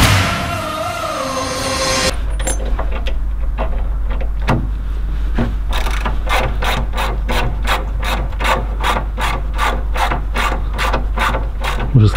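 Hand ratchet being cranked on a fitting at the side of an asphalt paver: a steady run of rasping clicks, about three a second, starting a couple of seconds in as music fades out.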